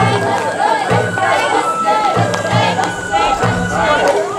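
Festival crowd of float-rope pullers shouting calls together, over Sawara-bayashi festival music with a thin steady flute line.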